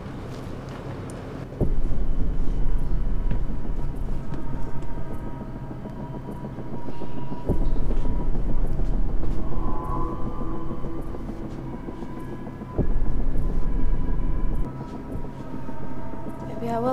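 Three deep, low booms, each starting suddenly, about five to six seconds apart, and rumbling on for a few seconds, over a faint steady drone.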